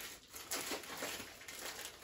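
Packaging crinkling and rustling in the hands, in irregular bits, as a small parcel is worked open by hand.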